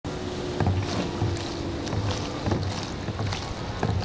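Stand-up paddleboard paddle strokes: the blade dipping and pulling through calm water, with a splash or light knock about every half second and water dripping between strokes. A steady low hum runs under the first two seconds.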